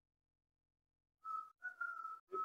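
Dead silence, then a little over a second in a high, steady whistling tone starts in two short stretches of about half a second each, with a brief break between them.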